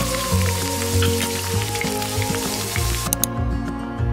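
Eggs frying in oil in a pan: a steady sizzle with small crackling pops that cuts off suddenly about three seconds in. Background music plays throughout.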